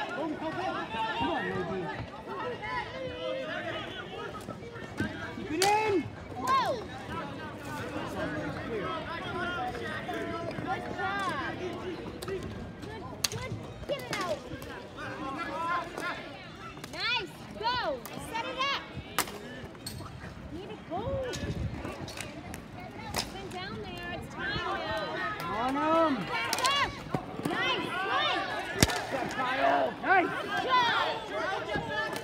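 Voices of players and spectators calling and chattering around a ball hockey game, with sharp clacks of sticks hitting the ball and boards scattered through.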